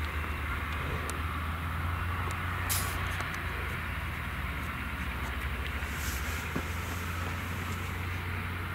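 Grimme Varitron 470 Terra Trac self-propelled potato harvester and its accompanying tractor working in the field: a steady low engine drone, with a few faint ticks and one sharper click about three seconds in.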